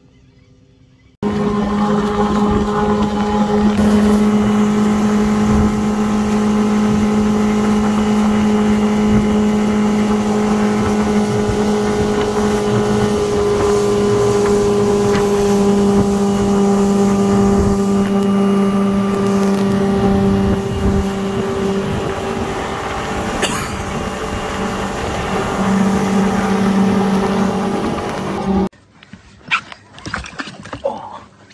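Motorboat engine running steadily at speed, with wind and water rushing past; it begins suddenly about a second in and cuts off abruptly just before the end.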